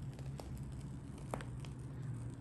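Quiet room tone with a steady low hum and a couple of faint, light clicks.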